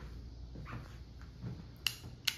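Quiet room tone with a few soft faint sounds, then one sharp click near the end.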